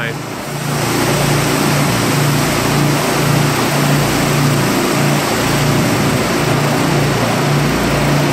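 A 4,000 psi pressure washer running, its rotary surface cleaner spraying across foamed concrete: a steady loud hiss of water over a low engine hum that pulses about twice a second.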